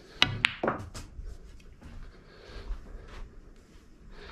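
Cue tip striking the cue ball below centre for a stun-screw shot, followed a fraction of a second later by the sharp click of the cue ball hitting the object ball. A further knock comes near one second, and a few fainter knocks of balls against the cushions follow.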